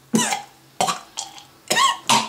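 A person's short, breathy vocal bursts, about five in two seconds, cough-like, with gaps between.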